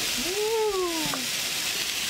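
Pancake frying in a nonstick pan on a portable gas camping stove, a steady sizzling hiss. Over it, a single drawn-out vocal sound rises and falls in pitch for about a second, with a light click near its end.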